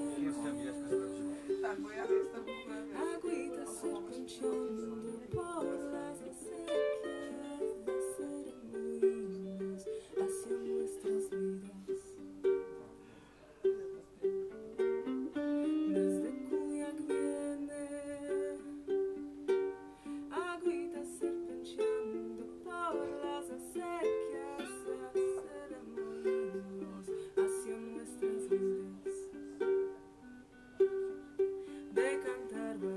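Solo ukulele being played: a continuous run of plucked notes.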